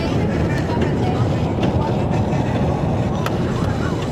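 Steady low rumble of a moving car heard from inside the cabin, with a few faint clicks.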